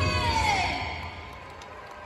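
Monster truck engine easing off: a pitched engine note slides down and fades out within about a second, leaving a low, steady arena background.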